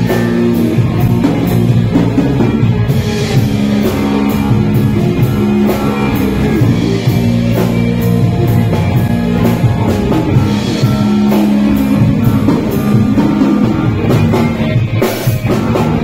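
Live rock band playing: electric bass, electric guitars and a drum kit, with cymbal strokes keeping a steady beat.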